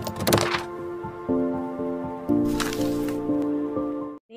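Intro jingle of held synth chords that change about a second in and again just past two seconds, with short whooshes at the start and around two and a half seconds in.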